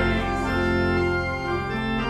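Church organ playing a hymn in sustained chords that change every second or so.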